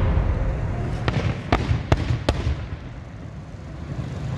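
Aerial fireworks: the rumble of a shell burst fading away, then four sharp pops about 0.4 s apart, over a low rumble that lingers.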